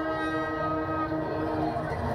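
A brass marching band holding a long, steady chord over drums. The chord breaks off near the end.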